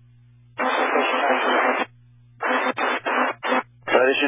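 Air traffic control radio traffic on an airport tower frequency, heard through a scanner feed. About half a second in, a transmission opens as a noisy, unintelligible burst lasting just over a second. A few short, choppy bursts of radio speech follow, with a low steady hum in the gaps between transmissions.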